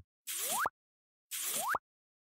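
Two identical cartoon 'bloop' sound effects about a second apart, each a quick upward pitch glide lasting about half a second.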